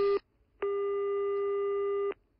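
Telephone ringback tone heard down the line as a call is placed: a brief beep at the start, then after a short gap one steady, even beep lasting about a second and a half.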